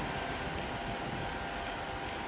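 A steady low rumble of outdoor background noise, even in level, with no distinct events.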